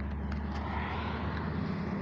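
Steady low engine drone.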